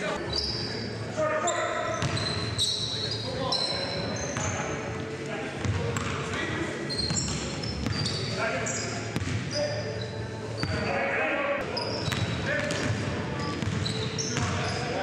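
Live basketball game sound in a gym: a ball bouncing on the hardwood court, many short high-pitched sneaker squeaks, and players' voices, all echoing in the hall.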